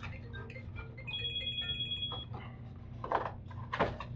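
Handling and rustling of packaging and a small accessory being unpacked, with two louder brief scrapes near the end. About a second in, a steady high tone sounds for about a second.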